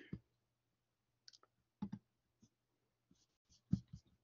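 Faint, irregular clicks at a computer, about seven of them spread over the last three seconds, the loudest near the end.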